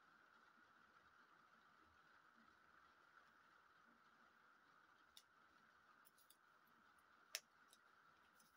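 Near silence: room tone with a faint steady hum. In the second half come a few faint small clicks of tiny plastic miniature parts being handled, the sharpest about seven seconds in.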